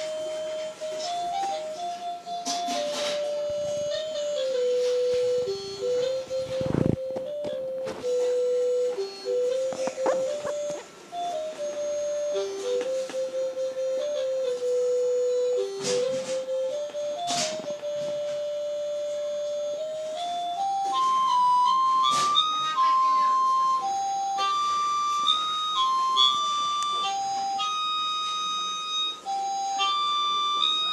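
Toy electronic keyboard played one note at a time, a slow single-line melody in the middle range that steps up higher about two-thirds of the way through. A few brief knocks and clicks from the handling are heard along the way.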